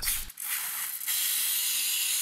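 Aerosol can of foam paint stripper spraying onto a glass phone back panel: a steady hiss starting a moment in and lasting about two seconds.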